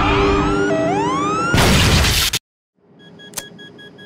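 Movie-trailer soundtrack: dramatic music with rising pitched sweeps, then a loud crash-and-shatter effect about a second and a half in that cuts off suddenly into a short silence, followed by a faint click.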